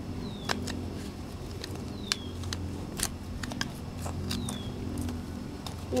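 Hand trowel digging in garden soil and wood mulch, its blade making irregular sharp scrapes and clicks as it works the dirt. A short falling whistle sounds three times over a steady low hum.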